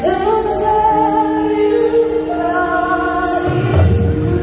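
A choir and band performing a gospel song live, with voices holding long sustained notes; low bass notes come in near the end.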